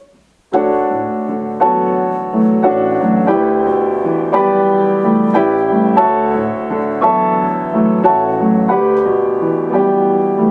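Grand piano played four hands: a duet in a Latin-style rhythm with seventh and ninth chords, the music starting suddenly with a loud chord about half a second in and then repeated chords on a steady pulse.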